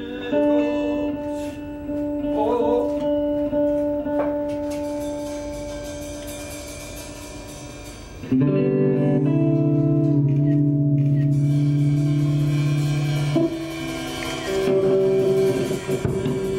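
Live improvised band music led by electric guitar: held chords ring and slowly fade, then a loud new chord is struck about eight seconds in and sustained, shifting again near the end.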